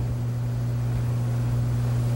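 Steady low electrical hum over an even hiss: the room tone of the recording, with no one speaking.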